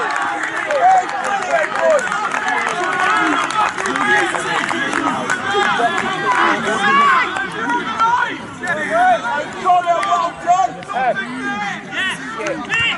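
Several footballers' voices shouting and chattering over one another as they celebrate a goal on the pitch.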